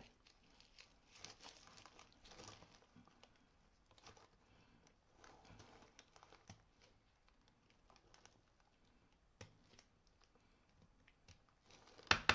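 Faint rustling and small clicks of plastic aquarium grass being handled and snipped with scissors, in scattered bursts.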